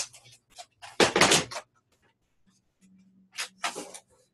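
A plastic sliding paper trimmer being handled on a wooden tabletop: a burst of knocks and rattling about a second in as it is set down, and another near the end as paper is lined up in it.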